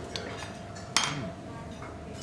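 Metal cutlery clinking against tableware: a couple of light taps, then one sharp clink about a second in that rings briefly.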